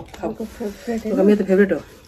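Speech: a woman talking in short stretches.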